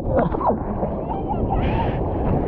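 Seawater sloshing and gurgling around a GoPro camera held at the water's surface, with a steady low rumble and a few wobbling, warbling gurgles.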